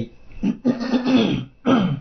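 A man clearing his throat with a rough, gravelly rasp, ending with a short falling voiced sound.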